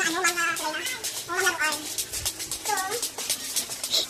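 Indistinct voices that no words can be made out from, with short rising-and-falling pitched calls about a second and a half in and again near three seconds, over a patter of small clicks.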